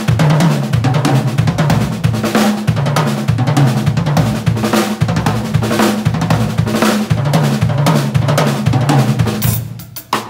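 Acoustic drum kit played fast in a gospel-chops lick: rapid snare and bass drum strokes with cymbals and hi-hat. The playing stops just before the end.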